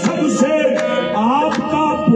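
Live qawwali: a man's sung voice gliding and wavering over a steady harmonium drone, with sharp tabla strokes.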